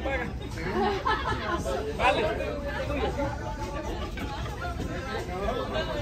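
Several people talking at once: casual chatter among a small group of guests, with no single voice standing out.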